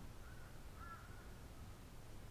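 Faint bird calling in the background: two short calls about half a second apart, over a low steady hum.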